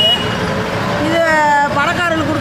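A woman talking in Tamil, drawing out one long vowel about a second in, over steady background noise.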